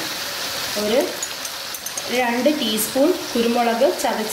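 Squid pieces with onion, tomato and spices sizzling as they fry in a pan, stirred with a steel spoon, with light scraping ticks throughout.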